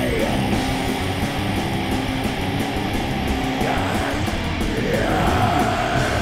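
Death metal: distorted guitars, bass and drums playing without vocals.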